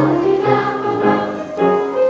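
School choir singing a piece in parts, several sustained voices moving from note to note together, with grand piano accompaniment.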